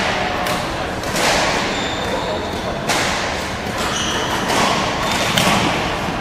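Badminton doubles rally in a large gym: sharp racket strikes on the shuttlecock every second or so, short high squeaks of court shoes on the floor, and background chatter echoing in the hall.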